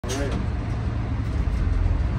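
Naturally aspirated Detroit Diesel 6-71, a two-stroke inline-six diesel, running with a steady low rumble, heard from inside the cabin of a 1978 Crown school bus.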